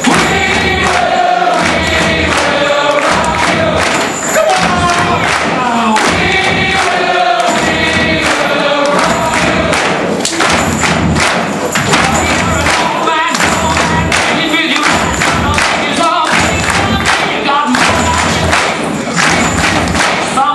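Music with singing voices over a steady beat.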